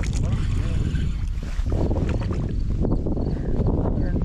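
Wind rumbling on the microphone, a steady low haze, while a spinning reel is cranked to bring in a hooked crappie.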